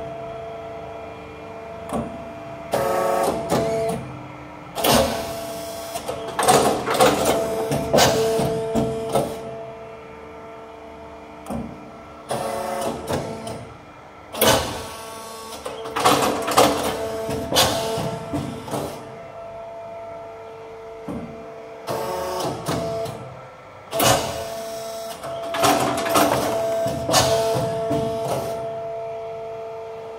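BOY 22D hydraulic injection moulding machine running automatic cycles, about one every ten seconds. In each cycle a steady pump whine comes up under load with clicks and clatter from the clamp and ejection, then drops back to a quieter hum.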